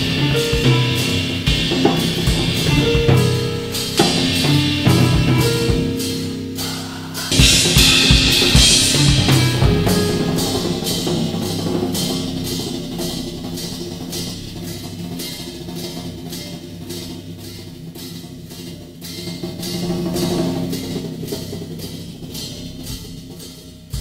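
Drum kit played with sticks in a rolling, wave-like pattern of toms and cymbals over sustained harp notes in a whole-tone scale, with a cymbal swell about seven seconds in. The playing gradually dies away toward the end.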